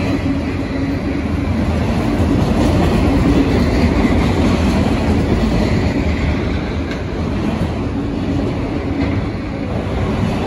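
Freight train of autorack cars rolling past close by: a loud, steady rumble of steel wheels on the rails, with a faint hum that comes and goes.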